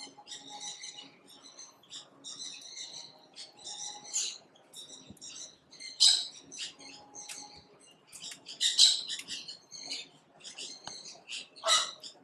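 Small birds chirping in an aviary: many short, high calls in quick succession, with louder calls about six, nine and twelve seconds in.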